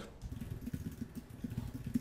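Computer keyboard typing: a quick, irregular run of dull, muffled keystrokes as an email address is entered.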